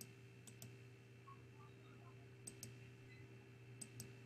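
Faint computer mouse clicks, some in quick pairs, over near silence with a faint steady electrical hum.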